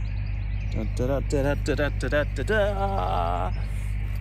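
A voice in a short run of wavering, sung-sounding notes, over a steady low drone from nearby building sites.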